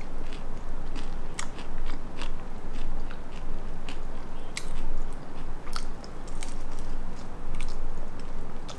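A person chewing crisp-skinned pan-fried tofu close to the microphone, with irregular crunches between chews.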